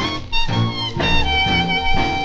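1937 big band swing record playing an instrumental passage with no singing. The horns play short accented chords, then hold one long chord from about halfway through.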